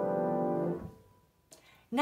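Grand piano chord ringing on with the damper (sustain) pedal held down, then cut off a little under a second in as the pedal is released and the dampers come down on the strings.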